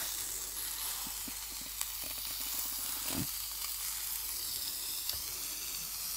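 Margarine-buttered bread sizzling steadily against the hot plate of an electric sandwich toaster, with a few faint ticks as ham is handled on top.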